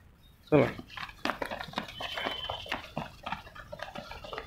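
A single loud shout falling in pitch about half a second in, then rapid footsteps on concrete, with children's voices and laughter, as a group of boys sprints off from a standing start.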